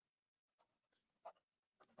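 Near silence with faint scratching of a pen writing on paper.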